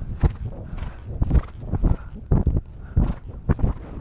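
A horse's hoofbeats on turf at a canter: clusters of dull strikes, one stride about every half second.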